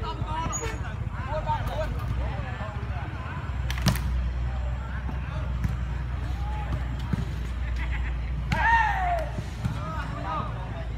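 Outdoor volleyball rally: one sharp smack of the ball being hit about four seconds in, amid players' calls and chatter. Near the end comes a loud shout that falls in pitch, the loudest sound, over a steady low rumble.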